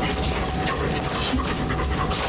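Explosive-detection service dog panting in quick, repeated breaths while it searches a suspect object.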